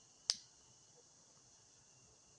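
A single sharp click from a brass lighter being worked to light a tobacco pipe, about a third of a second in.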